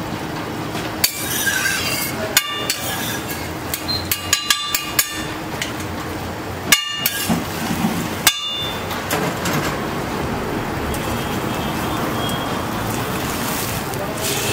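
A metal spatula strikes and clinks against a flat iron griddle about eight times, each hit ringing briefly, with a quick cluster of hits around the middle. A steady hiss of frying egg and stall noise runs underneath.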